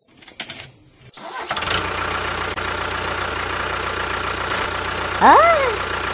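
A few light clicks from a small toy tractor being handled, then a steady engine-like hum starts about a second and a half in and runs on. Near the end a person's voice gives a short rising-and-falling exclamation, the loudest sound.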